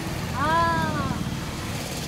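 Steady low rumble of street traffic, with one drawn-out voiced sound that rises and falls in pitch for under a second, about half a second in.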